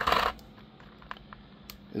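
Clear plastic blister tray of action-figure accessories handled and set down: a short crinkly plastic clatter at the start, then a few faint clicks.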